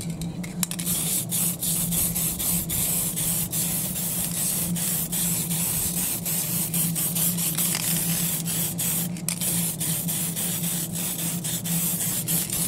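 Aerosol spray paint can hissing as paint is sprayed onto paper, in a run of bursts broken by many brief pauses, over a steady low hum.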